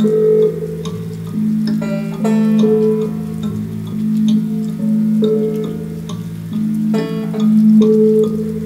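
Instrumental music: plucked string notes over a sustained low tone that pulses in a repeating pattern, with sharper note attacks about two seconds in and again near the end.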